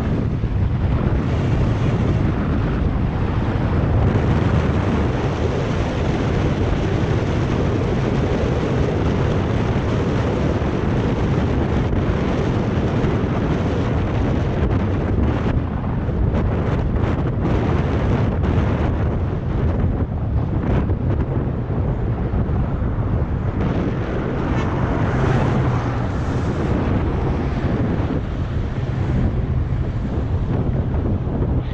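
Steady wind rushing over an action camera's microphone as a mountain bike rides downhill at speed, with a low rumble beneath, thinning briefly a few times about halfway through.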